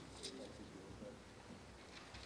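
Near silence: quiet room tone of a large hall, with faint indistinct murmuring and a few small rustles or clicks.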